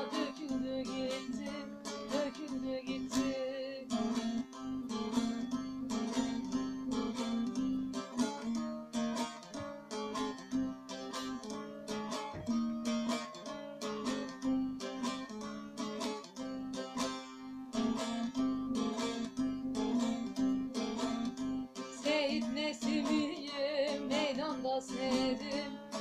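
Bağlama (long-necked Turkish saz) played alone in an instrumental passage: quick, dense plectrum strokes over a steady low droning note.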